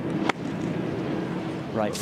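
A golf club striking the ball: one sharp click about a third of a second in, over steady outdoor background noise.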